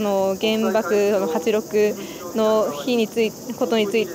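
A young woman speaking Japanese, over a steady high-pitched drone of cicadas in the trees.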